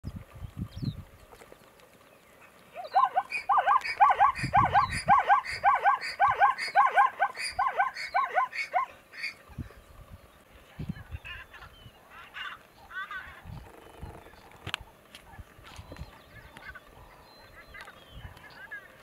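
Plains zebra calling: a rapid run of barks, about three a second, lasting some six seconds.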